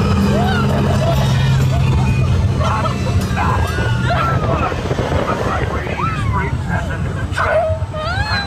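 Riders whooping and shrieking with laughter in an open-top ride car at speed. Under the voices, the ride vehicle gives a steady low drone that fades out about halfway through.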